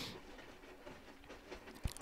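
A quiet pause: faint room tone, with a soft hiss fading out at the start and a small click near the end.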